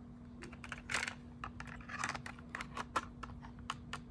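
Handling of a clear plastic cassette player and cassette: a quick irregular run of small plastic clicks and rattles, with a couple of louder rustling knocks, over a faint steady hum.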